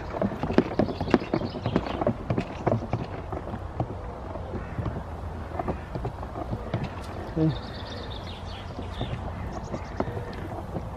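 Knapsack sprayer at work spraying a bare apple tree: a run of quick, irregular clicks and knocks over the first three seconds, then fewer, with a steady low rumble of wind on the microphone.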